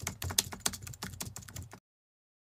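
Keyboard typing sound effect: a quick run of key clicks, about seven a second, that stops shortly before the end.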